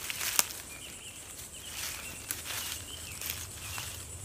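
Soft rustling of dry leaf litter and poncho fabric as someone moves about and handles the tarp on the forest floor, with one sharp click about half a second in.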